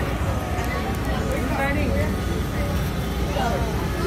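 Background voices and chatter of a crowd over a steady low rumble.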